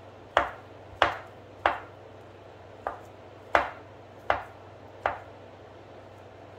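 Knife chopping imitation crab sticks on a wooden cutting board: seven sharp knocks of the blade striking the board, about two-thirds of a second apart with one longer pause in the middle.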